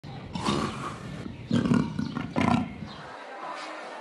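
A leopard calling: three loud, deep roaring calls about a second apart. The sound cuts off about three seconds in, leaving quieter background.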